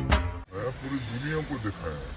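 Drum-backed music stops abruptly about half a second in. A man's voice follows, drawn out with a slowly rising and falling pitch, over a steady hiss.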